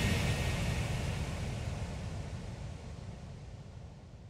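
A low, noisy rumble dying away steadily toward silence: the decaying tail of the closing music and logo sound effect, with no pitched notes left.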